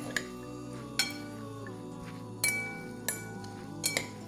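Metal spoon and fork clinking against a glass bowl as lettuce is tossed, about five sharp clinks spread over the few seconds, over steady background music.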